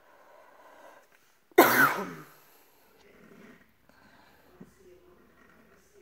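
A woman's single sharp cough about one and a half seconds in. Around it there is only faint scratching of a pen drawing on a paper plate.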